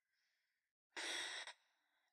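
A single short breath into a close microphone about a second in, lasting about half a second, otherwise near silence.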